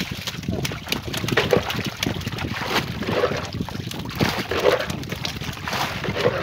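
Water splashing and sloshing around a bamboo-pole fish trap being worked over the side of a wooden canoe, with small knocks against the hull.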